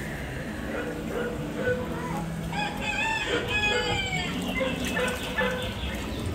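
Recorded rooster crowing once in an animatronic farm scene, starting about two and a half seconds in and sliding down in pitch at the end.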